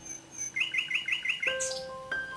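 A bird chirping in a quick run of short repeated notes, about nine a second, followed near the end by soft bell-like music notes.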